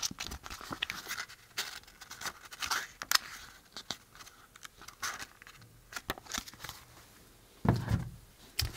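Pages of a small paper instruction booklet being leafed through by hand: a string of quick papery flicks and rustles. A duller thump comes near the end.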